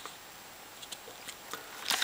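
Faint handling noise: a few soft ticks and light rustles from a circuit board in a plastic anti-static bag being held and moved, over quiet room tone.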